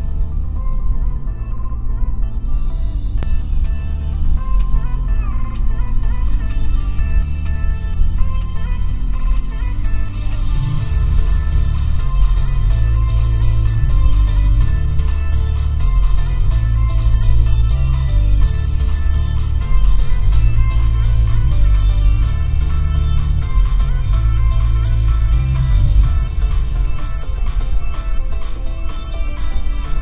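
Electronic music played through a 2006 Toyota 4Runner's six-speaker factory base stereo, heard inside the cabin. A strong bass line dominates, and higher parts come in about three seconds in.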